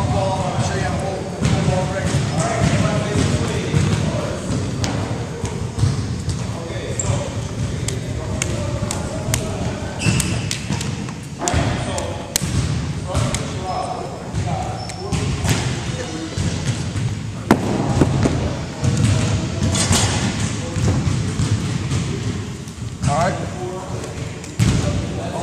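Busy school gymnasium with a hardwood floor: indistinct chatter of several voices under a constant low din, with irregular sharp knocks and thumps from balls and feet on the wooden floor.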